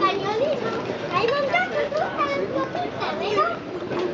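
Children's high voices calling out as they play, rising and falling in pitch, over a murmur of background chatter.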